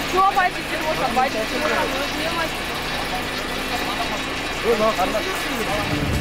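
People talking, their voices coming and going over a steady background of street traffic and a running engine.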